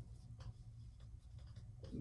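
Marker pen writing on a whiteboard: a few faint strokes as a word is written.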